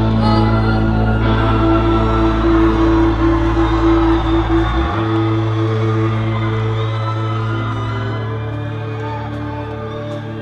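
Live rock band's music: held, droning chords with no drumbeat, slowly getting quieter. The deepest bass note stops about five seconds in.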